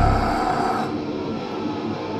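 Death metal band playing live: the drums and low end drop out about half a second in, leaving distorted electric guitar ringing on a sustained held note.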